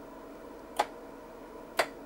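Sharp mechanical ticks repeating evenly about once a second, two of them here, over a faint steady hum.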